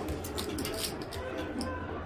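Faint background music with thin sustained tones over a low room hum, with a few light clicks.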